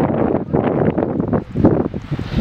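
Wind buffeting the microphone outdoors: a loud, gusty rumble that rises and falls, dropping briefly about three-quarters of the way through.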